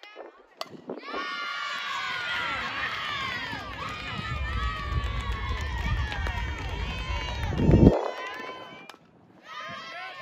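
A sharp crack of a softball bat hitting the ball about half a second in. Then a crowd of girls' voices cheers and yells for about seven seconds, peaking just before it cuts off near the end.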